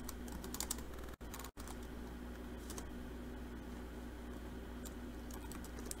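Faint computer keyboard keystrokes in a few short runs, typing a short terminal command, over a steady low hum.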